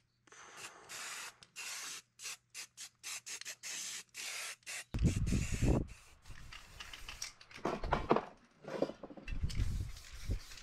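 Aerosol spray-paint can spraying in a quick series of short hisses, then longer sprays from about halfway, mixed with loud low rumbles.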